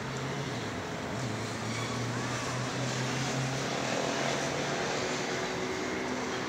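A steady low engine drone over the general noise of city traffic, swelling slightly toward the middle.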